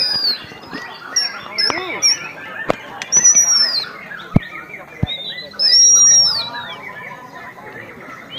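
Several caged songbirds singing at once over crowd chatter: loud, clear whistled phrases that arch up and fall away, the longest about three seconds in and again near six seconds.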